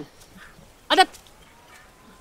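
A man's short quavering cry about a second in, with a bleat-like waver in its pitch.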